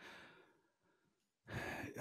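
Near silence, then about one and a half seconds in a man takes an audible breath close to the microphone just before he speaks.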